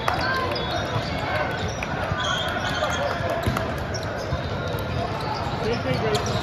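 Echoing hubbub of a large indoor volleyball tournament hall: many overlapping voices, with occasional thuds of volleyballs being hit and bounced on the courts.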